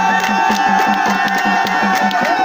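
Nepali folk dance music with a quick, steady drum beat and one long held high note, over the noise of a crowd.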